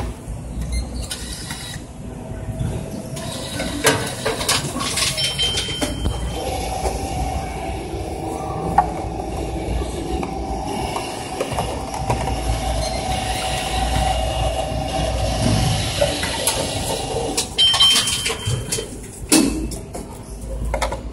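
Reverse vending machine taking in an empty plastic bottle: a click and a short high beep, then its internal motor running steadily for about ten seconds as it handles the bottle, ending with another beep and a clunk.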